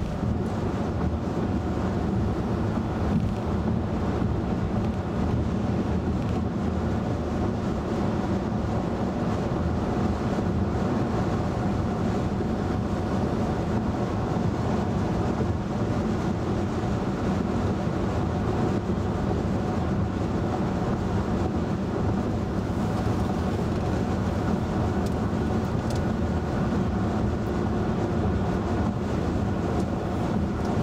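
Steady road noise inside a 2011 VW Tiguan SEL 4Motion cruising at highway speed: an even tyre rumble and cabin hum from its 18-inch wheels on concrete pavement, with no sudden events.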